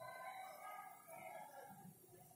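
Faint squeaks of a marker pen on a whiteboard as an equation is written, in three short strokes.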